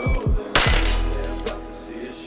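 A single gunshot from a Limcat Tron AR-style carbine fitted with a JP SCS short-stroke buffer, fired at a steel plate about half a second in, just after a shot-timer beep, and followed by a high ringing. Hip-hop music plays throughout.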